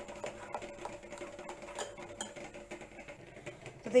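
Metal spoon stirring thick semolina idli batter in a glass bowl, with soft scraping and scattered light clinks against the glass.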